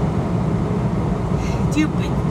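Steady low rumble of a semi-truck's engine and road noise heard inside the cab.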